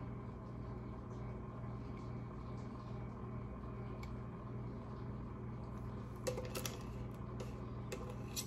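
A steady low hum, with a few light clicks and a short cluster of knocks about six seconds in as ice is worked loose from the bottom of a container.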